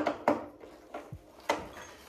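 Screwdriver working the screw of a climbing hold on a wooden board, with scraping and a few sharp knocks, the loudest at the start and about a second and a half in. The hold turns without unscrewing because the inside is shredded.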